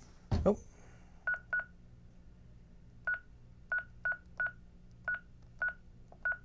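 Honeywell L5210 alarm panel's touchscreen giving a short beep for each key pressed on its on-screen keyboard: eight identical high beeps at an uneven typing pace.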